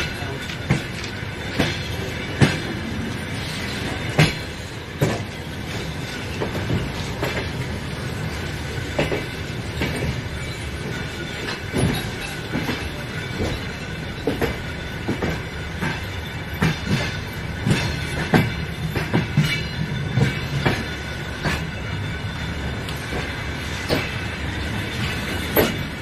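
Train wheels running over rail joints: a steady rumble broken by sharp, irregularly spaced clacks.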